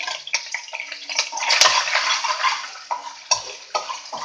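Ginger-garlic paste sizzling as it goes into hot oil in a kadai, loudest about a second and a half in, while a metal spatula scrapes it off a plate and clicks against the plate and pan.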